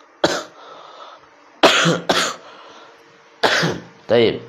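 A man coughing four times close to a clip-on microphone: short harsh coughs, the second and third in quick succession.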